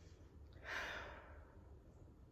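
A woman sighs once, a short breathy exhale a little over half a second in that fades away.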